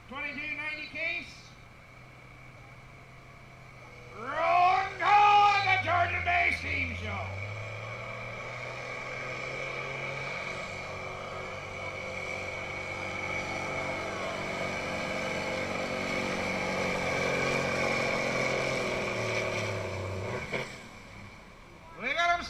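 Antique tractor engine working hard under load as it pulls the weight sled and puffs black smoke. It runs steadily and grows gradually louder for about thirteen seconds, then cuts off near the end.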